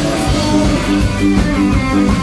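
Live rock band playing an instrumental passage: electric guitar over electric bass and a drum kit keeping a steady beat.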